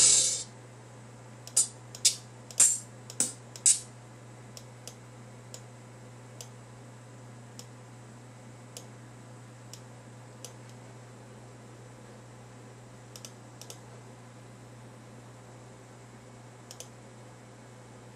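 Computer keyboard and mouse clicks: a quick run of five louder clicks in the first few seconds, then scattered faint ones, over a low steady hum. A short loud hiss-like burst comes right at the start.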